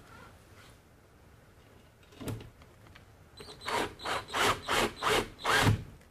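Cordless drill/driver driving a self-piercing screw through the recessed can's sheet-metal brace: one short burst, then a run of about six short bursts, two or three a second, near the end.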